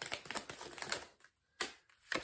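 A tarot deck shuffled by hand, cards slipping from one hand into the other in a quick run of light clicks. The clicking stops a little over a second in, and one more card snap follows shortly after.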